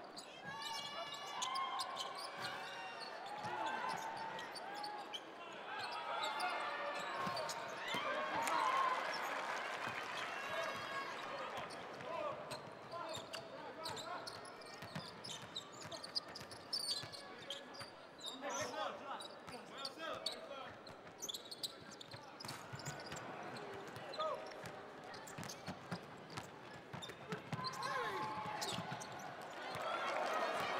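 Basketball being dribbled on a hardwood court, a string of short sharp bounces, under steady voices shouting and talking in a large hall.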